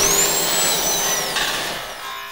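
Cartoon sound effect of a small creature bursting through a body: a dense rushing noise with a high whistle that rises, holds and then falls away, the whole fading toward the end.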